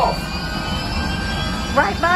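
Steady low hum of the simulator's spaceship engine sound effects, played through the Millennium Falcon cockpit speakers while the ship sits in the hangar. A voice from the ride comes in near the end.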